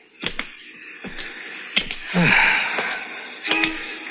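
Radio-drama sound effect of a cigarette being lit: a few small clicks, then a short hiss about two seconds in, with music underneath.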